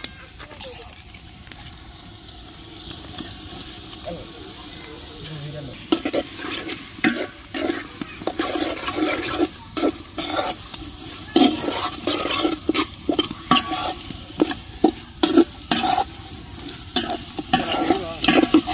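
A long metal spatula stirring and scraping chicken pieces and onions frying in an aluminium pot, over a steady low sizzle. The scraping strokes start about six seconds in and come irregularly, a few a second.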